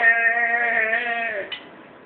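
A man's singing voice holding one long note at the end of a sung line, wavering slightly, then fading out about a second and a half in.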